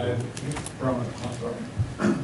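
A person's voice speaking, not clearly enough to be transcribed, with a few light clicks about half a second in.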